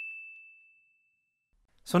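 Cartoon sound effect: a single high, bell-like ding that accompanies a character's wink, ringing on one pitch and fading out over about a second and a half.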